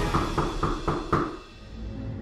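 Knocking on a door as a sound effect: a quick run of about five knocks, roughly four a second, dying away after just over a second. Dark background music runs underneath.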